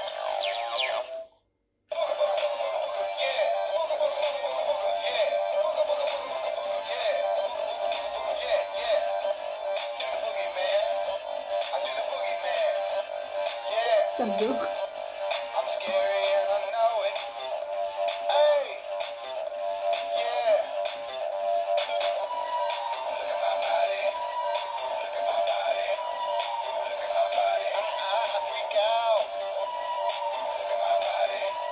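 Animated hip-hop skeleton toy playing a song with a synthesized singing voice through its small, tinny speaker, with a brief break about a second and a half in.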